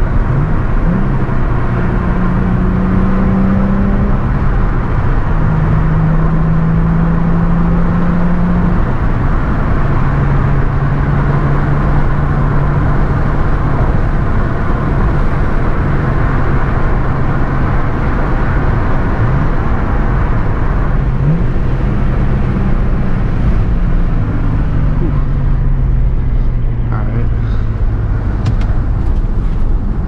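Nissan 350Z's V6 engine heard from inside the cabin while driving, with road and tyre noise. The engine drone holds steady at one pitch for several seconds at a time, shifting pitch a few times as the speed changes and falling near the end.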